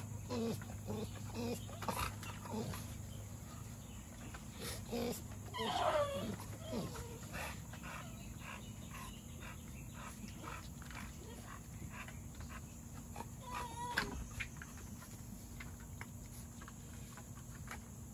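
An American Bully whining and grunting as she resists liquid dewormer given into her mouth by syringe, with falling whines about six seconds in and again near fourteen seconds, amid many small clicks.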